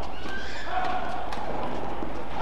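Badminton doubles rally: several sharp racket strikes on the shuttlecock, with short squeaks over a steady hall background.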